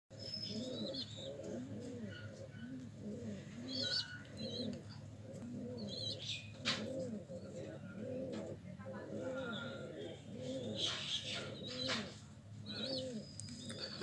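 Domestic pigeons cooing continuously, low rounded coos about twice a second, with high-pitched chirps from other birds now and then.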